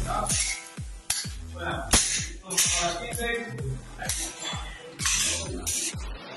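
Electronic dance music with a steady kick-drum beat.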